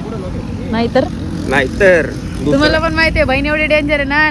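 People's voices, exclaiming and then laughing in quick repeated bursts in the second half, over a steady low rumble.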